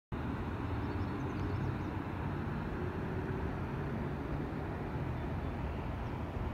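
Steady distant city traffic, an even low rumble with a faint hum, heard from a hillside overlooking the city.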